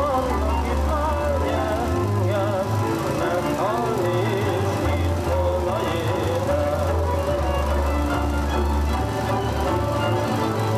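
Hungarian folk dance music playing for the dancers: a wavering melody over bass notes that change every second or so.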